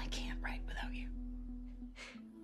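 A young woman speaking softly in a breathy, near-whispered voice over quiet background music with a long held note. The voice stops about a second in and the music fades near the end.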